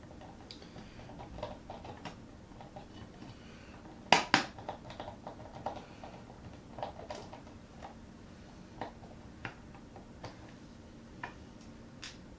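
Small metallic clicks and taps from a precision screwdriver and tiny screws being worked into an opened Mac mini, with a louder double clack about four seconds in and scattered ticks after it.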